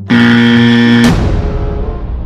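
Comic sound-effect buzzer: one loud, harsh, steady tone lasting about a second that cuts off suddenly. A rumbling tail follows and fades away.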